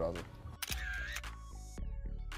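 A camera-shutter click sound effect, followed by a brief swish and a second click, over a background music bed.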